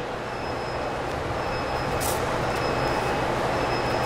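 Steady rumbling background noise of a large hall, with a brief rustling swish about two seconds in.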